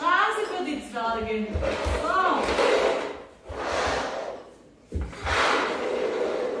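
Voices of young children talking and breathing, not forming clear words, with a few soft low thumps.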